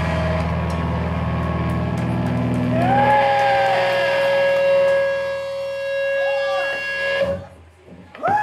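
Rock band's guitars and amplifiers ringing out after the final hit of a live song: a low chord drones on and fades, then a long high feedback tone holds steady for about four seconds, with a few rising-and-falling whoops from the crowd, before the sound cuts off sharply about seven seconds in.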